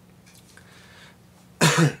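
A man's short cough near the end, two quick loud bursts.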